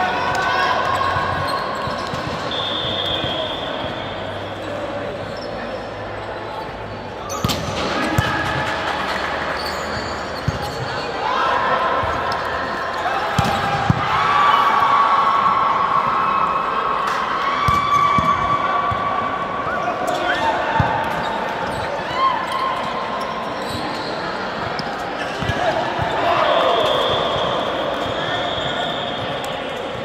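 Volleyball court sounds between rallies: scattered sharp ball bounces and hits on the court floor, over players' voices calling and chatting.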